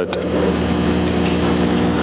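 Steady electrical hum: a buzz of several even, unchanging tones that cuts in as soon as the talk pauses and stops when it resumes.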